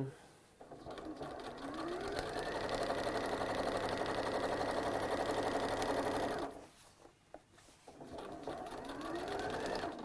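Electric sewing machine stitching a straight seam. The motor speeds up over about a second and runs fast and steady with a rapid needle rattle, stops about six and a half seconds in, then starts again and speeds up near the end.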